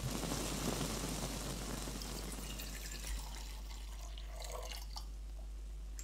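Liquid pouring and splashing. It starts suddenly and slowly dies away, with scattered small drip-like clicks.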